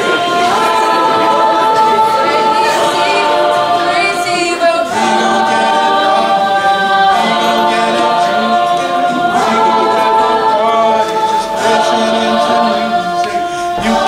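Mixed a cappella group singing close vocal harmony, held chords that move to a new chord about every two seconds.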